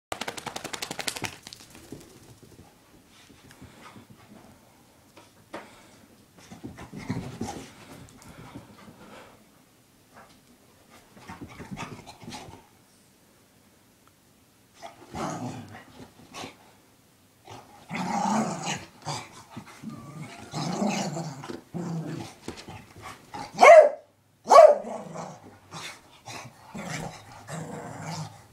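A beagle in a post-bath frenzy, growling and grumbling in repeated bursts that come thicker and louder in the second half, with two short, loud barks about three-quarters of the way through. At the very start there is a brief rapid rattle as it shakes its head.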